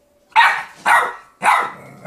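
A puppy barking at its own reflection in a mirror: three sharp barks in quick succession, about half a second apart.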